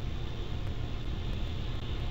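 Steady wind noise on an outdoor nest-camera microphone: an unsteady low rumble under an even hiss, with no distinct calls or knocks.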